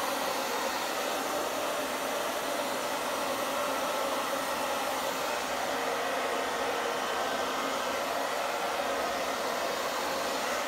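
Handheld hair dryer running steadily, blowing across wet acrylic paint on a canvas.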